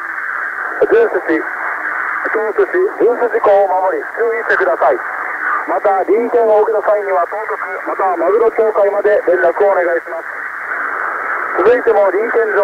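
A Japanese voice reading a fisheries radio bulletin over shortwave on 8761 kHz, heard through an XHDATA D-808 portable receiver. The sound is narrow and telephone-like, with steady hiss in the short pauses.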